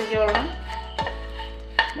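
A spatula stirring and tossing dried prawns in a nonstick pan, with light scraping and a few sharp clicks against the pan, about a second in and near the end. Background music plays throughout.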